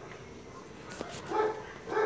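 A dog yipping twice, short and faint.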